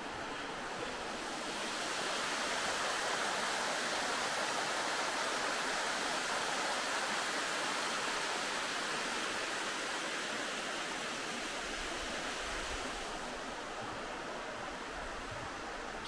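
Water pouring over a low weir in a steady rush, growing louder a couple of seconds in and easing off again near the end.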